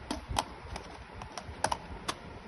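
A few light, irregular clicks and taps as plastic neckband earphones are handled and lifted out of a cardboard packaging tray.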